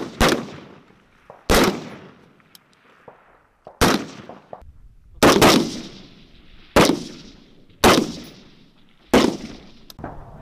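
Rifle shots fired one at a time, about seven in all, a second or two apart at uneven spacing, each trailing off in a short echo.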